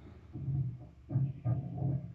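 A man's voice making about four short, low sounds into a microphone, much quieter than the loud vocal lines around them.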